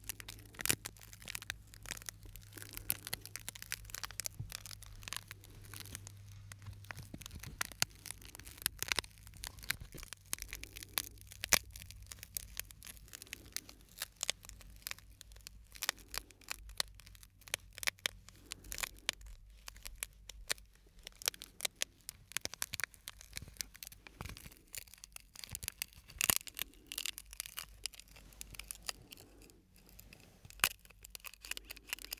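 Small pieces of broken glass in clear plastic, crackling and clicking irregularly as they are flexed and rubbed between fingers close to the microphones.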